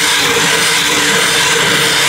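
A flat toothed hand rasp scraping across the surface of a block of clear ice: a continuous gritty scrape, with a faint steady hum underneath.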